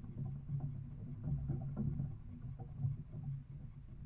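Low, steady rumble from a trail camera's own audio, with a few faint knocks scattered through it.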